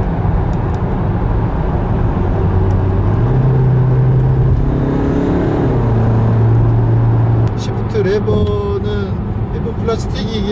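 Range Rover Evoque's 2.0-litre Ingenium turbodiesel heard from inside the cabin, revving higher as paddle-shift downshifts drop its nine-speed automatic from seventh to fourth gear and the car accelerates. Its pitch steps up about three seconds in. A man's voice comes in near the end.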